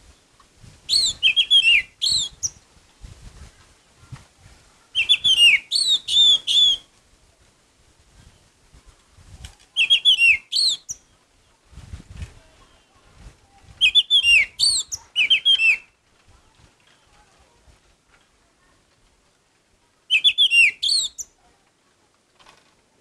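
Orange-headed thrush singing: five short bursts of quick, falling whistled notes, each a second or two long, spaced several seconds apart.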